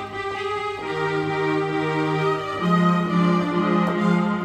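Korg Pa50SD arranger keyboard playing a slow choral piece in sustained, held chords. The bass note moves about a second in and again shortly before the three-second mark.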